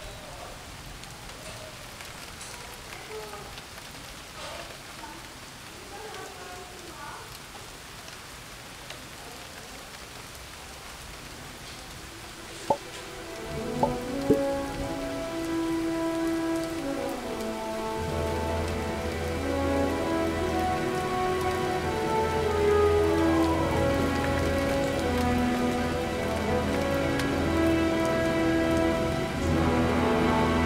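A steady soft hiss, then background music fading in about halfway with a couple of sharp pings, building with held notes and a bass line that enters a few seconds later.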